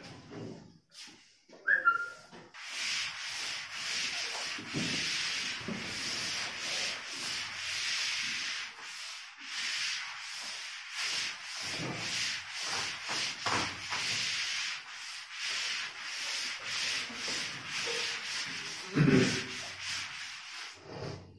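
A whiteboard being wiped clean: the eraser rubs across the board in quick back-and-forth strokes. The rubbing starts a couple of seconds in and stops about a second before the end, followed by a thump.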